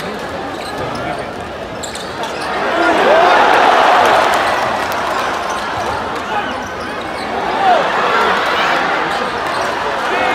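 Arena crowd noise during live basketball play, with ball bounces on the hardwood court and crowd voices. The crowd swells a few seconds in, and short squeaks are heard around three and eight seconds.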